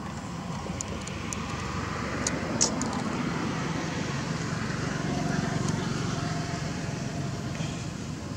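Steady low outdoor rumble, with a few faint clicks in the first three seconds.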